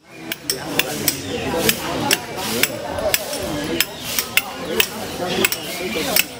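Sharp metallic clinks of hand tools striking stone, coming irregularly at roughly two a second, with voices in the background.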